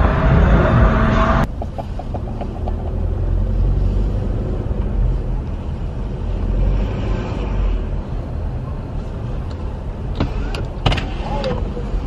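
Music cuts off suddenly about a second and a half in, leaving the steady low rumble of a car driving slowly, heard from inside the cabin. A few sharp clicks come near the end.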